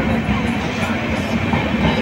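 Passenger train coach rolling along the track as the train pulls out of the station, a steady rumbling run noise with irregular knocks, heard from the open doorway.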